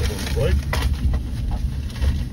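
Low rumble of a car rolling slowly along, heard from inside the cabin, with a few light knocks and a brief murmured voice about half a second in.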